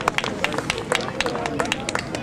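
A few people clapping by hand: sharp, uneven claps several a second over background voices.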